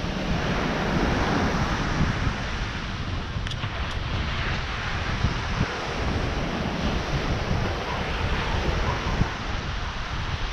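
Ocean surf washing onto a sandy beach, a steady noisy rush, with wind buffeting the microphone and adding a low rumble.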